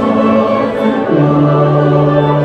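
Mixed choir singing with an orchestra, settling onto a long held chord about a second in.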